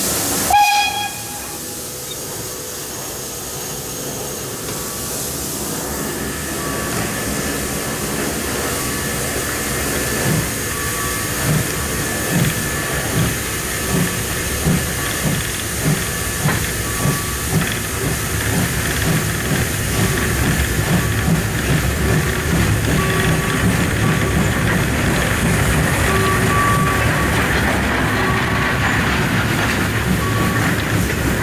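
Class 52 two-cylinder 2-10-0 steam locomotive starting away from a stand, heard from the cab. Steam hiss cuts off with a short whistle blast at the start. From about ten seconds in the exhaust beats set in, quickening as the engine gathers speed, and merge into steady running by the second half.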